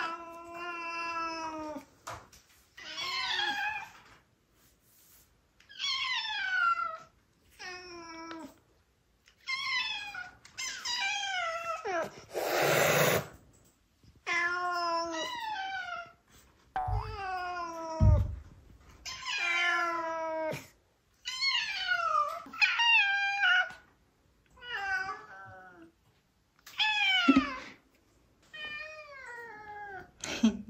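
Two domestic cats meowing back and forth in turn, about fifteen meows with short gaps between them, many of them long calls falling in pitch. About twelve seconds in comes a brief noisy rush, and around seventeen and eighteen seconds two low thumps.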